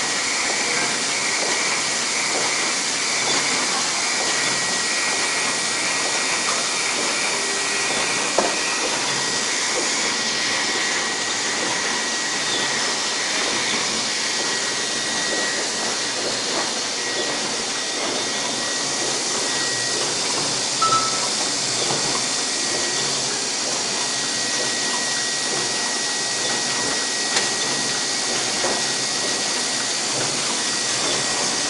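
Komori Sprint single-colour sheetfed offset press running at printing speed: a steady hissing whir with a faint high whine over it and a few brief clicks.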